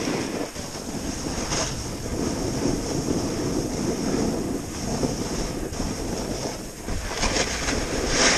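Wind rushing over the microphone of a body-mounted camera as a snowboard slides and carves down groomed snow, a steady noisy rush with a few brief louder swells.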